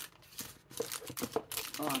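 Snack packaging crinkling and rustling as packets are lifted out of a box: a quick, irregular run of crackles, ending as a woman's voice begins.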